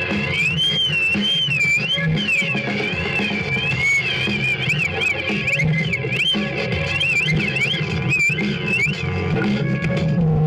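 Live experimental electronic improvisation played from a laptop: a high, wavering tone slides continuously up and down over a dense, pulsing low layer.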